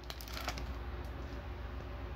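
A torn trading-card pack wrapper crinkling as a stack of hockey cards is slid out of it, with a few sharp crinkles in the first half second. Then a softer rustle of cards rubbing together as they are handled.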